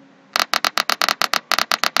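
A fast, fairly even train of sharp clicks, about eight a second, starting a moment in.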